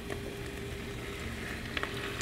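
Stock being poured from a small stainless-steel saucepan into a Dutch oven of sautéed mushrooms: a faint, steady pour, with a couple of light clicks near the end.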